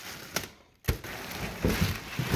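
Plastic wrapping rustling and cardboard packaging being handled. There is a short knock about a second in, followed by continued rustling.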